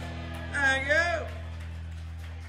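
A live band's closing chord rings out with a low note held steady. About half a second in, a voice gives a brief exclamation that rises and falls in pitch.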